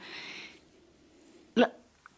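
A pause in conversation: a faint breathy hiss at the start, then one short clipped spoken syllable about one and a half seconds in.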